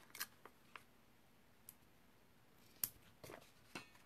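Faint, scattered clicks and small handling sounds of hands working with paper-crafting supplies, about seven short ticks in all, the sharpest one near three seconds in.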